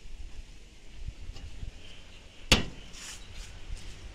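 A single sharp knock about two and a half seconds in, with a few fainter ticks after it, as the lid goes back on the gasifier's drum fuel hopper, over a low rumble.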